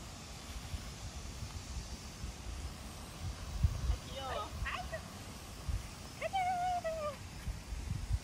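Small dog giving excited high-pitched yips and a whine while running an agility course, a short cluster about halfway through and one longer, level whine near the end.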